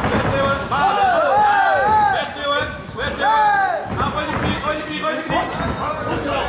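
Ringside shouting: several loud, drawn-out yells that rise and fall in pitch, coaches' and supporters' calls to the fighters, over crowd noise.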